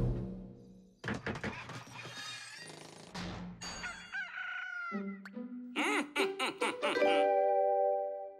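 Cartoon soundtrack: music fades out, then a string of sound effects follows, with a rooster crowing about four seconds in. A held chime-like tone with several pitches sounds near the end.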